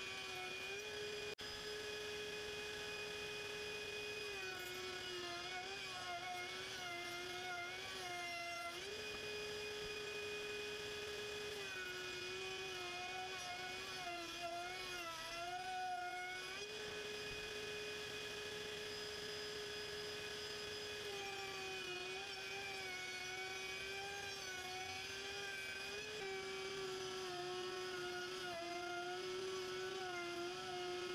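Table-mounted router running at high speed with a steady whine as boards are fed past the bit to cut panel grooves. The pitch drops and wavers under load during each pass, four passes in all, and rises back to a steady pitch between them.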